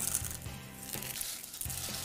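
Taco chips crushed by hand and crackling faintly, over soft background music.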